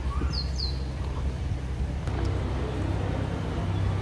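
Steady low outdoor rumble, with two quick high bird chirps near the start.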